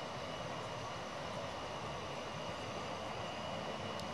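Steady, even background noise with a faint high steady tone and no distinct calls or knocks.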